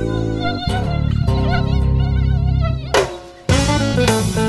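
A high, wavering mosquito whine over background music, running from about a second in to near three seconds. The music drops out briefly and then comes back louder near the end.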